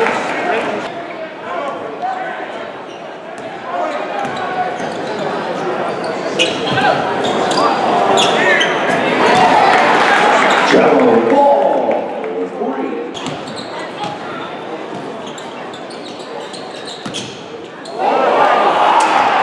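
Basketball bouncing on a hardwood gym floor during live play, with the voices of a crowd echoing in a large hall; the crowd grows louder about halfway through.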